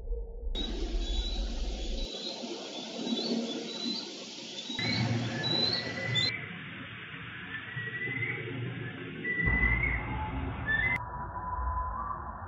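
A series of short chirping calls, typical of bald eagles, played back slowed down in steps. The calls drop lower and stretch out about six seconds in and again near the end, over a steady noisy hiss.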